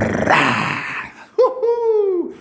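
A man's hoarse, breathy shout, then a long falsetto 'woo' near the end that jumps up and slides down in pitch.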